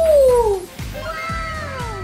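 Background music with a steady beat, carrying a melody of swooping notes that rise and then fall, meow-like.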